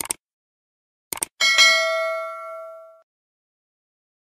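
Subscribe-button animation sound effects: a click, a quick double click about a second later, then a bright notification-bell ding that rings for about a second and a half and fades.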